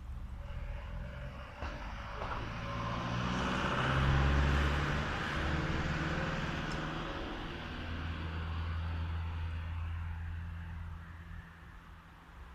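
A motor vehicle passing on the road: engine hum and tyre noise swell to a peak about four seconds in, then fade slowly away.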